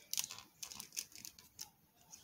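Light, irregular plastic clicks and ticks from an articulated plastic robot figure being handled, as its hip and leg joints are moved.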